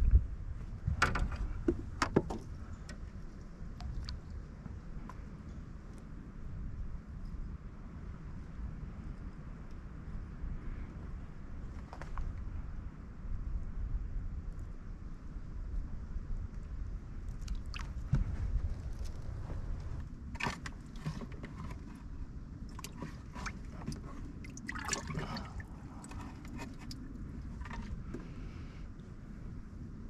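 Water lapping and gurgling against the hull of a small flat-bottomed boat under a low wind rumble, with scattered light knocks and clicks: a few near the start and more clusters in the second half.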